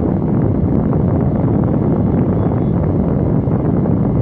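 Steady rushing of a car's air conditioning blowing inside the cabin, with the air buffeting the phone's microphone.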